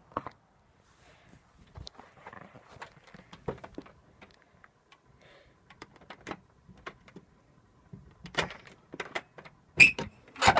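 Scattered light clicks and knocks, with a sharper knock just after the start and another just before the end.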